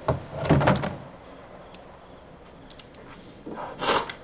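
A person slurping noodles from a bowl: a loud, noisy slurp about half a second in and another near the end.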